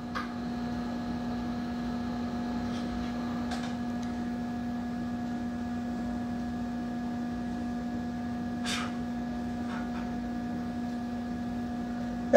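Steady electrical hum with a low buzzing tone and a fainter higher one, as from mains hum in a room's equipment. A couple of faint short noises break in, about three and a half seconds in and again near nine seconds.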